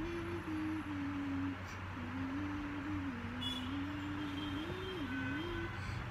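A soft, simple melody, one low note at a time, stepping and sometimes sliding between a few pitches with short breaks, over a steady low electrical hum and room hiss.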